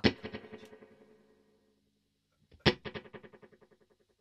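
Electric guitar struck twice through a Strymon El Capistan tape-echo pedal set to a short delay time with its reverb off. Each strike is followed by a quick run of closely spaced repeats that fade out within about a second.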